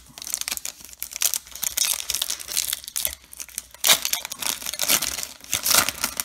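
Foil trading-card pack wrapper crinkling and being torn open by hand, with sharp crackles throughout. The loudest tearing bursts come about four seconds in and near the end.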